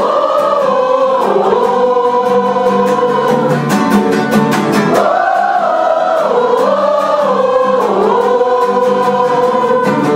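Large choir of mostly women's voices singing a gospel song in sustained phrases, with a strummed acoustic guitar accompanying them.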